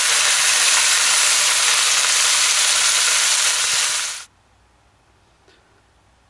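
Marinated chicken skewers sizzling in oil in a frying pan, a steady sizzle that stops abruptly about four seconds in.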